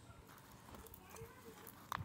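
Faint small clicks and scrapes of aquarium-style gravel, glued onto the top of a potted plant's soil, being picked at and pried loose by hand, with one sharper click near the end.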